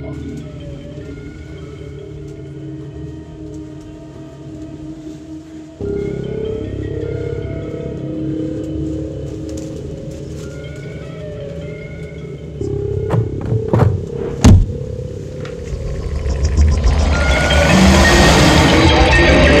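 Horror film score: low sustained drones under faint high tones, stepping up in loudness about six seconds in. A few sharp, loud hits come a little after the middle, then the score swells into a loud build near the end.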